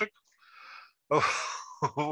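A man laughs, heard through a video call: a faint breath, then a loud breathy laugh about a second in.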